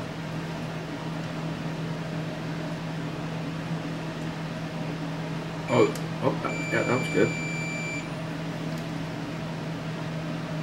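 Multimeter continuity beeper: a short chirp about six seconds in, then a steady beep lasting about a second and a half as the probes bridge a zero-ohm jumper on the drum motor's circuit board, showing the connection is good. A steady low hum runs underneath.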